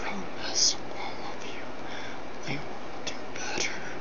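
A man whispering close to the microphone, in short breathy phrases, over a steady hiss.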